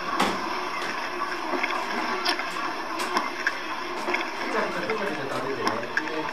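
A home video played back over a room speaker: a small child chewing with the lips apart, with wet smacking clicks and quiet voices in the background. Smacking of this kind is the sign of open-mouth chewing, which the dentist counts as an abnormal eating habit.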